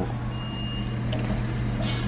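Steady low hum of a restaurant dining room, with one short high-pitched electronic beep lasting well under a second, starting about a third of a second in.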